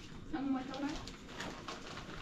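A voice says a few short words, followed by a few light clicks and clinks as metal dishes and spoons are handled.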